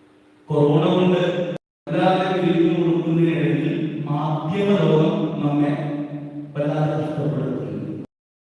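A priest's voice chanting in long held notes over a microphone, broken by a brief total dropout of the sound about one and a half seconds in.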